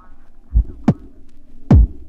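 Electronic dance music in a DJ mix stripped down to a bare kick drum: the melody fades out and three heavy kick hits land, about half a second in, just before one second, and near the end, each a deep thud that drops in pitch.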